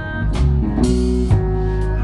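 Live rock band playing an instrumental stretch with no singing: electric guitars, electric bass and a drum kit, with a crashing drum hit about a second in.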